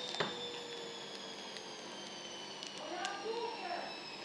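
Faint handling of a foil trading-card pack with a sharp click just after the start, and a faint murmured voice about three seconds in.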